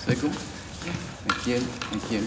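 A voice speaking indistinctly in short bursts, with one sharp tap about a second and a quarter in.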